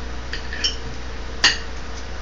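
Cutlery clinking against a plate: two light clinks, then one louder, ringing clink about a second and a half in.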